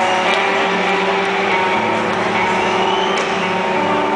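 Rock band playing live, heard from the audience: long held chords with no clear beat. The chord shifts a little after the start and again near the end.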